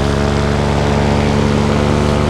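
A Vittorazi Moster 185 single-cylinder two-stroke paramotor engine and propeller running at a steady throttle in flight, a constant drone.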